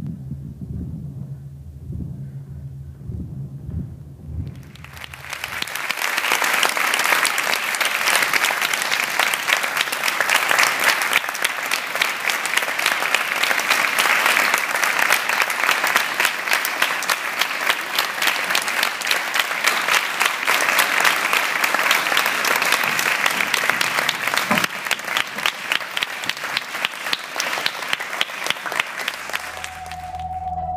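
A low rumble for the first few seconds, then a seated audience bursts into loud, sustained applause about five seconds in, with many hands clapping for over twenty seconds.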